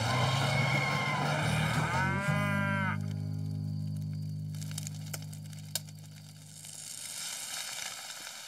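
Cartoon animal sound effect: a harsh, rough call for about two seconds, then a long low moo that fades out over the next few seconds.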